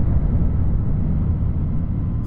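Steady, loud, deep rumble without pitch or rhythm, a film's sound-design rumble for a spacecraft near the sun.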